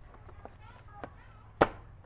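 Plastic-wrapped motorcycle seat being handled: faint plastic rustling and a couple of light clicks, then one sharp snap about one and a half seconds in as the seat is set back onto the bike.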